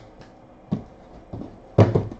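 Handling noise on a tabletop: a few light knocks, then a louder thump near the end, as trading cards in hard plastic holders and sealed card boxes are moved about.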